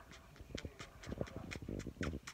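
A dog snuffling and licking right at the microphone: an irregular run of short wet smacks and sniffs.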